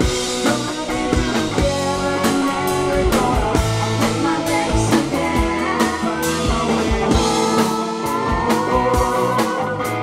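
Live rock band playing: electric guitar over bass guitar and drum kit, with a steady beat.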